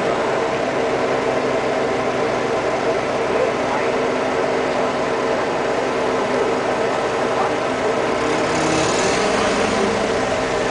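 An engine idling steadily, its tone shifting slightly near the end, with voices in the background.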